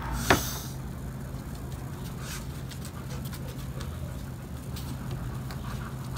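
A plate is set down on the table with one sharp clack just after the start. Then come faint small clicks and tearing as sticky jackfruit pods are pulled from the fruit by hand, over a steady low hum.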